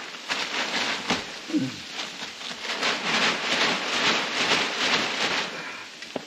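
Plastic tarp covering rustling and crinkling loudly as it is cut and pulled with a knife, an uneven run of crackly noise that fades toward the end.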